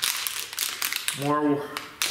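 Packaged parts rustling and clicking as they are rummaged through by hand, with a short voiced 'uh' in the middle.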